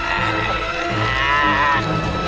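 A man's drawn-out, wavering cry of pain as his eyes are gouged out, over a tense film score.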